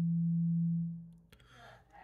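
Small laminated iron-core coil humming with one steady low tone as the battery-powered oscillator circuit drives it with alternating current. The hum fades out about a second in and is followed by a faint click.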